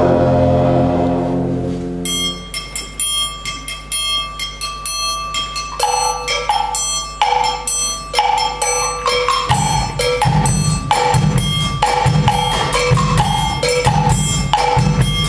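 A wind band's held brass chord dies away, then the percussion section carries on alone with a steady Latin drum-kit groove of crisp, evenly spaced strokes. A repeating two-note pitched percussion figure joins about six seconds in, and deep drum beats come in at about nine and a half seconds.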